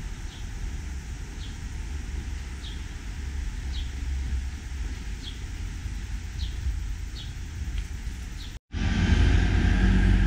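Steady low outdoor rumble on an action camera's microphone, with a faint short high chirp repeating about once a second. Near the end the sound drops out for an instant and switches to louder city-street traffic.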